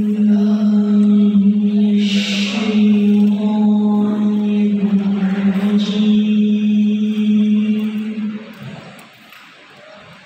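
A single voice holding one long sung note, echoing in a large hall, which dies away about eight and a half seconds in.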